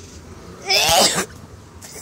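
A person's single short, loud, breathy vocal burst about halfway through, its pitch rising then falling; otherwise low background noise.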